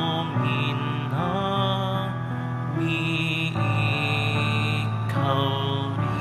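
Slow Communion hymn music made of long held notes and chords, changing every second or two.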